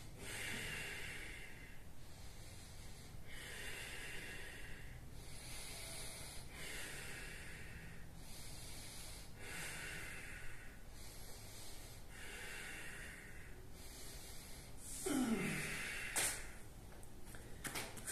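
A man's deep, audible breathing, steady in-and-out breaths repeating every second or two, while he holds a strenuous yoga pose for a count of five breaths. Near the end comes a short voiced exhale falling in pitch as he releases the pose, followed by a single soft click.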